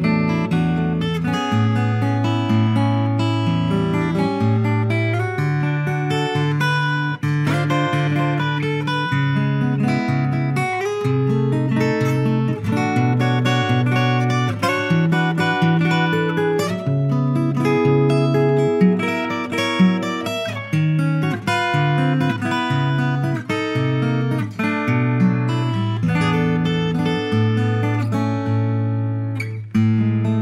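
Maestro Raffles IR CSB D acoustic guitar, a double-top with Indian rosewood back and sides, played solo fingerstyle: held bass notes under a picked melody, with a brief pause just before the end.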